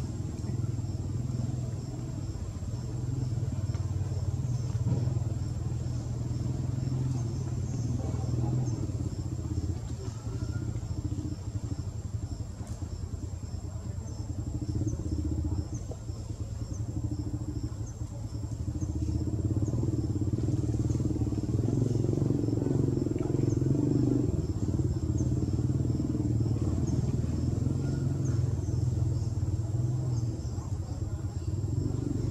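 A steady low rumble that grows louder about two-thirds of the way through, with faint high chirps repeating above it.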